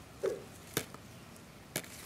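Two faint, sharp clicks about a second apart: the small plastic parts of a 3D-printed scale-model trailer's tailgate and claw locks being handled and knocking together.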